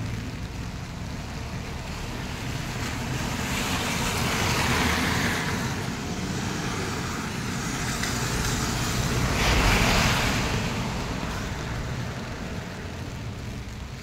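Road traffic passing on a rain-wet road, the tyres hissing on the wet surface. Two vehicles go by, the hiss swelling and fading about four and ten seconds in, over a steady low rumble.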